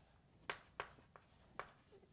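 Faint writing sounds: four short ticks and strokes of a pen or marker tip, spaced irregularly, in a small quiet room.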